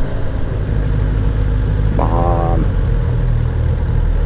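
Kawasaki ZX-10R's inline-four engine running with a deep, low purr under wind noise as the bike rolls down to a stop in town traffic. A short steady-pitched tone sounds about two seconds in.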